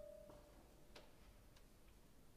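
The last held note of a grand piano dying away into near silence, followed by a few faint, short clicks.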